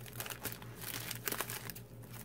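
Plastic bubble mailer crinkling and rustling as it is handled and opened, with a few brief sharp crackles.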